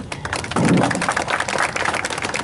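Audience applauding: a dense, irregular patter of many hand claps that grows louder about half a second in.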